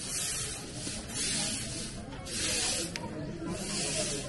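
Grass broom (jhadu) sweeping a paved lane: a run of dry swishing strokes, about one a second.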